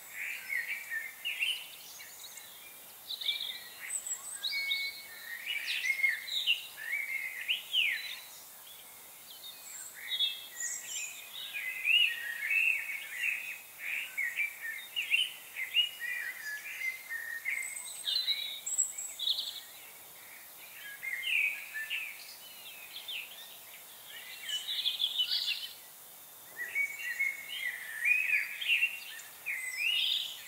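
Many small songbirds chirping and twittering in short, overlapping calls, with a couple of brief lulls, over a faint steady hiss.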